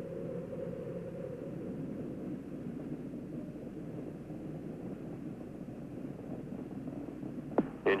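Space Shuttle Challenger's solid rocket boosters and main engines during ascent: a steady, muffled rumbling roar carried on a narrow-band broadcast channel, with a single sharp click near the end.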